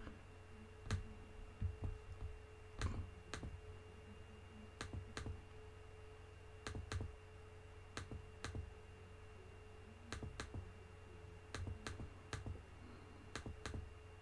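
Faint computer mouse clicks, about twenty of them scattered irregularly and some in quick pairs, over a faint steady electrical hum.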